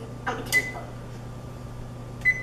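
Electric range's oven touch control panel giving one short high beep about half a second in as a key is pressed to set the oven.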